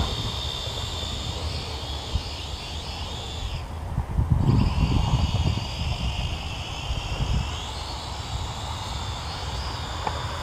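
FPV quadcopter's electric motors and propellers whining high overhead, the pitch shifting with throttle; the whine drops out briefly about four seconds in and comes back, rising again near the end. A low rumble sounds under it around the dropout.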